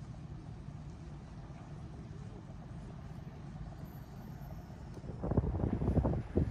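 Steady low outdoor rumble. About five seconds in it gives way to louder, irregular gusts of wind buffeting the microphone.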